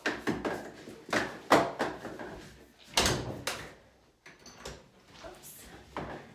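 A string of knocks and clatters from a door swing's metal over-door bars being slid onto the top edge of an interior door and the door being pushed shut. The loudest knocks fall about a second and a half in and at three seconds.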